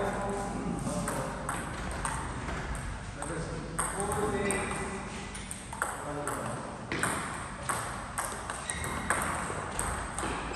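Table tennis ball clicking off paddles and bouncing on the table in repeated sharp ticks during rallies, with voices in the background.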